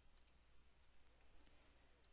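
Near silence: faint room hiss with a few faint computer-mouse clicks.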